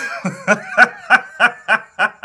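A man laughing: a run of short chuckles, about three a second.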